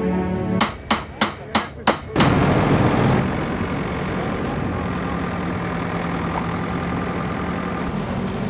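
A hammer strikes metal five times in quick succession, about a third of a second apart, then gives a louder bang. After it comes a steady low engine hum of an excavator running on the site.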